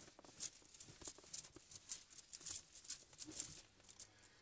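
A dry-erase whiteboard being wiped clean: a quick, irregular run of scratchy rubbing strokes.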